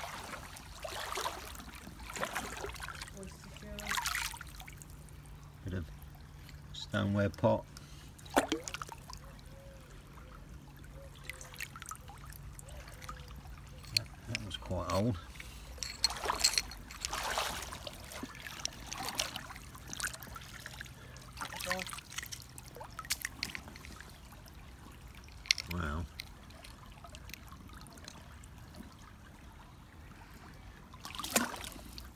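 Shallow stream trickling over a gravel bed, with irregular splashes and stirring of the water throughout, and brief indistinct voices.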